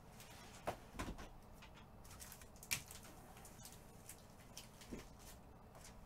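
Quiet room tone with a few faint, scattered clicks and taps, about four in all, the clearest near the middle.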